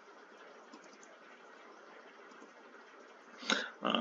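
Faint steady hiss of room and microphone noise with no distinct sound, then a man's voice begins near the end with "uh".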